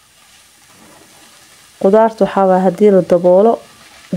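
Meat and vegetables frying faintly in a cast-iron pot as they are stirred and tossed. About two seconds in a voice comes in loudly with long, steady-pitched notes for nearly two seconds, covering the frying.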